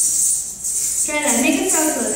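Odissi dancer's ankle bells (ghungroo) jingling steadily as she steps and stamps, with a voice coming in about a second in.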